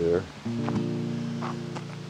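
Acoustic guitar music: a strummed chord held and left ringing, with a few light plucks over it.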